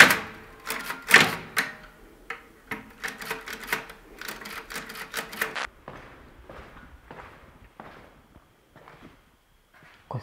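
Keys of an old manual office typewriter being struck, a rapid, irregular run of sharp clacks with a loud strike at the very start, lasting about five and a half seconds. Then softer, spaced footsteps on a hard floor.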